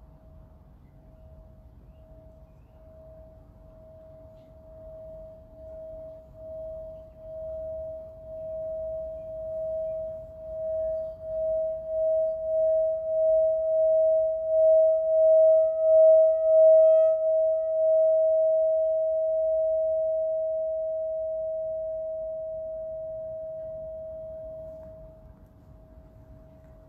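A hand-held metal singing bowl rimmed with a stick: one steady tone that swells with a regular pulsing wobble, growing louder for about sixteen seconds. It then rings on, fading smoothly, and is cut off shortly before the end.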